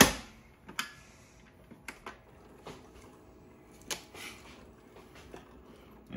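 A sharp click as the lid of a single-serve pod coffee maker is pressed shut, followed by scattered light clicks and taps.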